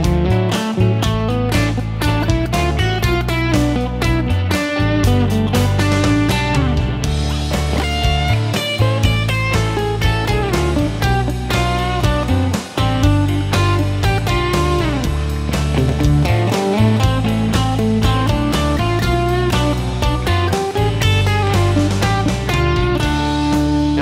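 Electric guitar, a Fender Telecaster, playing a pentatonic lead with string bends over a backing track with bass and drums. It starts in major pentatonic and shifts to minor pentatonic about halfway through.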